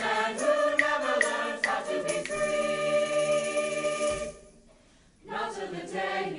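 Mixed choir singing, with a tambourine tapping a steady beat about two and a half times a second. About two seconds in, the voices hold a chord, then cut off together a little past four seconds. About a second of near silence follows before the singing starts again.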